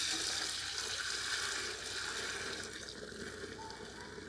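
Herbal leaf decoction poured in a thick stream from an aluminium bucket into an aluminium pot, splashing steadily and slowly growing quieter toward the end.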